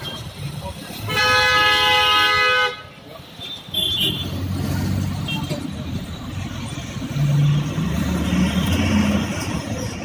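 A vehicle horn sounding one long blast of about a second and a half, then a brief high beep a little later, over the steady rumble of city street traffic.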